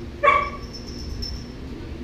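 A pet's single short, loud call, sharp at the start and lasting about a quarter second, near the start.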